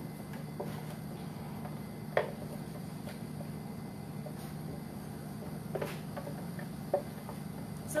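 A spatula scraping and knocking inside a blender jar as thick sauce is poured out: a few scattered knocks, the sharpest about two seconds in, over a steady low hum.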